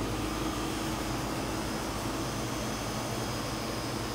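Walk-in cooler condensing unit running: a steady compressor and condenser-fan hum with even tones. The unit has a refrigerant (Freon) leak, which the technician has yet to find.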